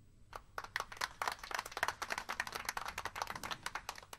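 Applause from a small audience: separate hand claps, quickly growing dense, starting about a third of a second in.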